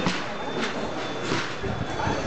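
Indistinct voices over outdoor background noise, with three short rushing bursts of noise about two-thirds of a second apart.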